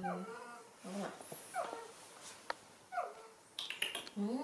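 Baby monkey giving about four short, high whimpering calls that fall in pitch, with a few sharp clicks near the end.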